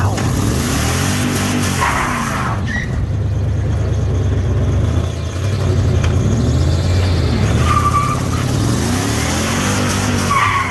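Dodge Ram pickup's engine revving, its note rising and falling several times as the truck is driven in a tight circle.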